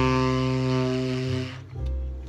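Buescher 400 tenor saxophone, played through a JodyJazz hard-rubber mouthpiece, holding one long note that ends about a second and a half in.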